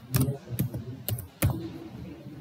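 Typing on a computer keyboard: a few separate keystrokes, unevenly spaced, the loudest about a second and a half in.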